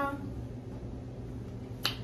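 A low steady hum under quiet room tone, broken by a single sharp click shortly before the end.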